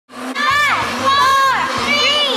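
Upbeat intro music with a pulsing bass line, and girls' high-pitched whoops over it, one after another, each sliding down in pitch.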